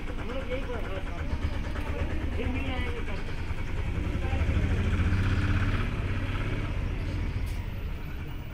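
People talking over a steady low rumble, which swells and grows louder about halfway through.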